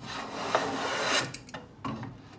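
Stanley No. 6 hand plane cutting a shaving along the edge of a wooden board in one long stroke of about a second and a quarter, followed by a brief scrape near the end.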